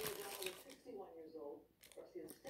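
Faint murmured voice, with a short crinkle of a fast-food paper wrapper being handled at the start and another near the end.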